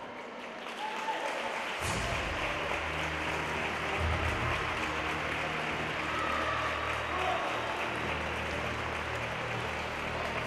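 Audience applauding steadily. About two seconds in, music with a low bass line starts underneath.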